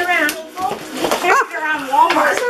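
Only voices: children and an adult exclaiming, with no words made out.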